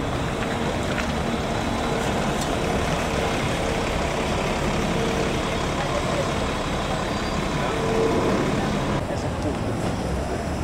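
City diesel bus engines running with steady street traffic noise: an articulated bus pulls away and a Volvo city bus drives in. A faint whine comes and goes and is strongest about eight seconds in.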